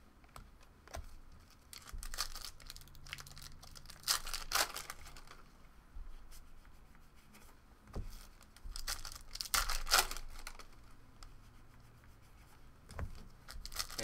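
Foil trading-card packs being torn open and crinkled, and cards being handled, in scattered short rustles, with a couple of soft knocks as cards are set down on the table.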